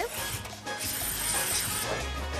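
Aerosol can of cooking-oil spray hissing in one burst of about a second, starting about a second in.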